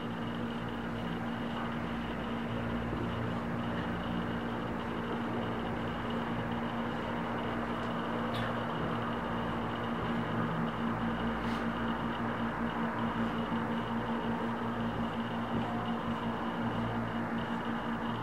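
Steady electrical hum and hiss of room noise, with faint taps and scratches of a marker drawing on a whiteboard and a couple of soft clicks.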